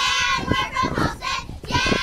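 A group of young cheerleaders chanting a cheer together in sing-song unison.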